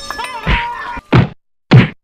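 Music with a thudding beat that stops about a second in, followed by two loud whacks about half a second apart.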